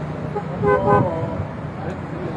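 A car horn gives one short honk about two-thirds of a second in, over low steady street and traffic noise.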